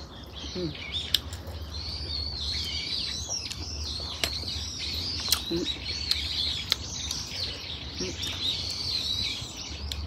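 Small songbirds chirping and twittering without a break, a busy run of high wavering calls, with a few sharp clicks from snail shells being handled.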